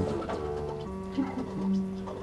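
Electronic synthesizer drone: steady held tones, one of which drops out about a second in, with a couple of short low warbling notes after it.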